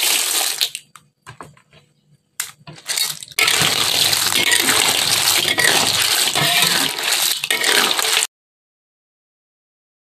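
Small clams (remis) in their shells clattering and splashing as they are tipped from a colander into a wok of coconut-milk broth: a first rush, a few scattered clicks, then about five seconds of continuous shell rattling that cuts off suddenly near the end.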